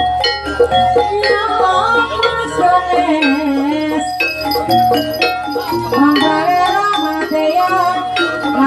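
Javanese ebeg (kuda lumping) trance-dance music: struck pitched notes from gamelan-type percussion and drum strokes under a wavering sung vocal line, played loud and without a break.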